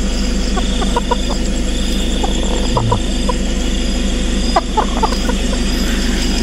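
Chickens clucking now and then inside woven bamboo carrying baskets, over a steady low hum.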